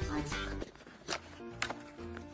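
Background music with steady notes, with a few sharp crackles of plastic bubble wrap being handled, about a second in and again half a second later.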